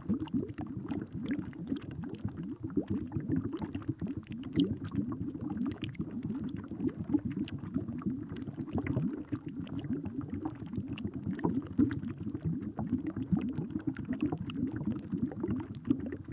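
Continuous low bubbling and gurgling watery ambience, thick with small pops and clicks: a sound-design bed for a scene inside the cell.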